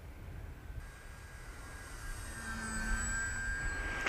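Electric motor and tractor propeller of a small foam RC plane flying past, a faint whine that grows louder over the last couple of seconds as the plane comes closer.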